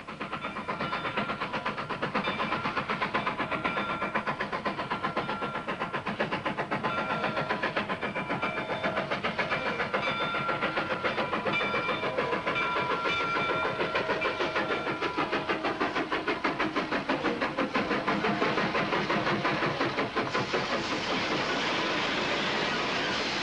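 Steam train under way: a fast, steady chugging of about three beats a second, with hiss, and held tones coming and going above it.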